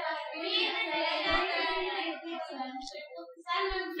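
A high-pitched voice holding long, fairly level notes, fainter than the lecturer's speech, breaking off briefly about three and a half seconds in.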